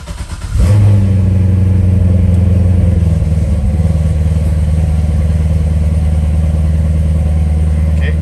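Chevrolet C6 Corvette V8 starting: it catches about half a second in with a loud start-up flare and settles into a steady fast idle, its pitch easing slightly about four seconds in. It is a cold start, with the oil not yet up to temperature.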